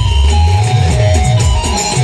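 Loud amplified Timli folk dance music from a band, with a heavy pulsing bass and a melody line above it.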